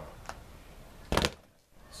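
Speed bag hit once with a double punch: a single short burst of quick thuds just over a second in, as the bag is driven into the rebound platform and bounces back.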